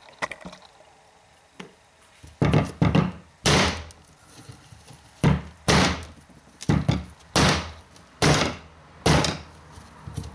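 A whole coconut on a concrete floor struck again and again with a hatchet to crack its hard shell. About ten dull knocks start a couple of seconds in, roughly one every half second to a second.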